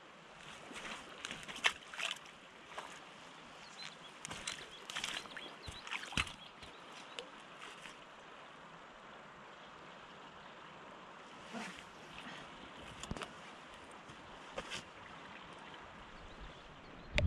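A river flowing, faint and steady, with scattered short clicks and rustles close by, most of them in the first six seconds and a few more later on.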